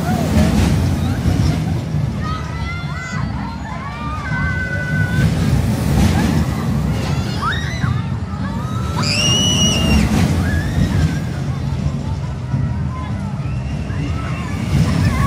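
Riders shrieking and calling out on a spinning disc ride as it swings along its curved track, with one loud high scream about nine seconds in. A heavy, steady low rumble runs underneath.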